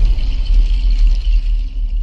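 Loud, deep bass rumble with a faint high shimmer above it, from the sound design of an animated channel-logo intro sting.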